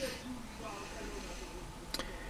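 Quiet car interior with a faint voice in the background and a single sharp click near the end.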